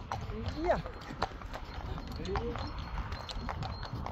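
Hooves of several Friesian horses walking on an asphalt road, an uneven clip-clop of sharp knocks a few times a second.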